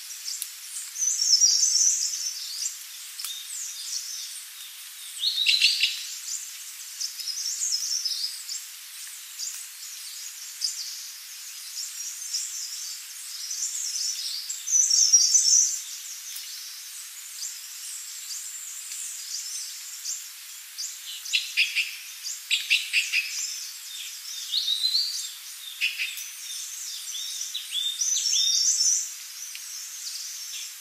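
Forest songbirds singing and calling: short high chirps and trills that come every few seconds, over a faint steady hiss.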